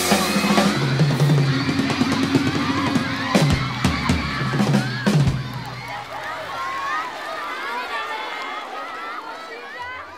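A live rock band crashes through the final bars of a song on drums and a held chord, stopping about five seconds in; then a concert audience cheers and screams as the recording fades out.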